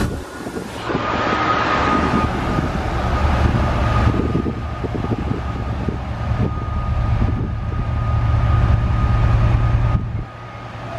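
Class 68 diesel-electric locomotive's Caterpillar V16 engine running with a deep steady hum as the locomotive passes and draws to a stop, the hum swelling near the end. A steady high whine sounds over it from about a second in.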